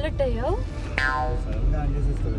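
A woman talking over a steady low rumble inside a car's cabin, with a short, sharp-starting pitched sound effect about a second in.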